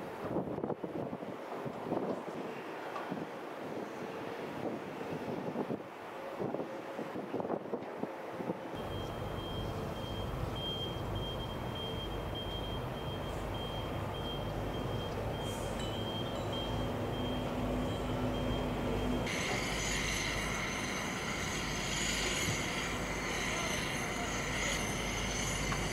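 Heavy construction machinery at work across a large site: engines running with scattered knocks and clanks in the first part, then a steadier machine rumble with a vehicle's high reversing-alarm tone sounding on and off from about ten seconds in.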